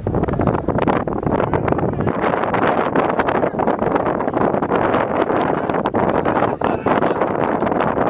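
Wind buffeting the camera microphone: a steady, loud rushing noise with no pause.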